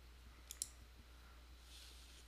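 Two quick computer-mouse clicks close together about half a second in, over a faint steady low hum.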